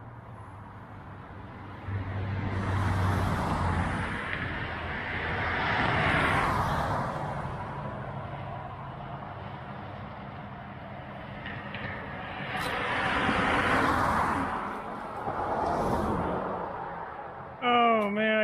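Two vehicles passing on the road beside, one after the other, the tyre and engine noise of each swelling up and fading away.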